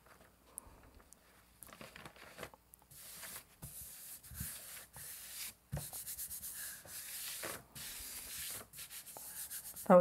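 A hand rubbing the back of a sheet of oriental paper laid over an inked gel plate, burnishing it so that the paper picks up the print. The dry rubbing starts about three seconds in and goes in short repeated strokes.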